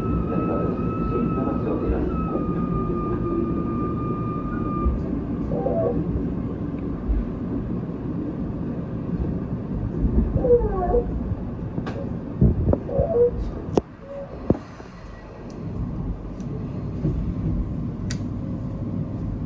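Tobu 10050 series electric train pulling out of a station and gathering speed, heard from inside the cab: a steady rumble of running gear, with a faint whine that slowly falls in pitch and fades out about five seconds in, then a few sharp clicks from the track.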